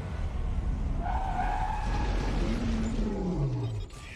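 Road traffic sound effects: a steady low engine rumble, a brief tyre squeal about a second in, and an engine note sliding down in pitch as a car passes, all cutting off suddenly near the end.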